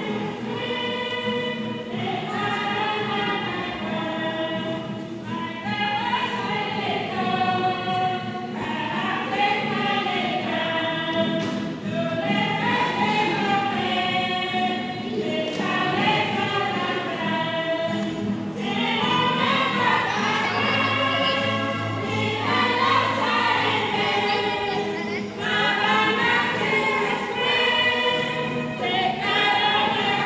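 A crowd of voices singing a religious hymn together, in long sung phrases with short breaks between them.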